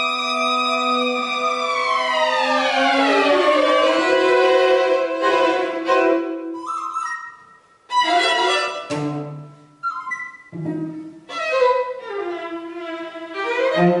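String quartet playing contemporary classical music. A held chord slides downward in pitch together a couple of seconds in. After a brief pause the quartet plays short, sudden chords with gaps between them, including a low cello note.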